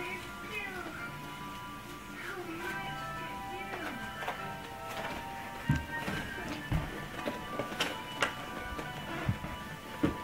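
Simple electronic tune from a baby activity-centre toy, in steady held notes. A few high wavering cries come in over the first few seconds, and several sharp knocks fall in the second half.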